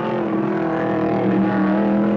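Trans Am racing car's V8 engine running at high revs as the car passes, with a steady note that shifts slightly in pitch.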